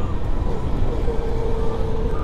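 Motorcycle engine running steadily while riding, under a dense low wind rumble on the microphone.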